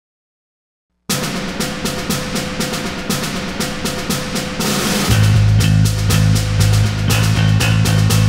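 Silence, then about a second in rock music starts suddenly with fast, dense drumming. About five seconds in, a heavy bass comes in and the music gets louder.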